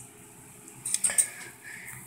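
Handling noise close to the microphone: a short cluster of light clicks and knocks about a second in, as a soda bottle and the camera are moved about.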